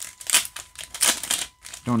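Crinkling and rustling of a foil trading-card booster pack and its cards being handled, in several short rustles.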